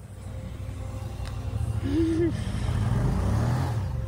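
Side-by-side UTV engine running low and steady, then getting louder and climbing in pitch in the second half as it revs.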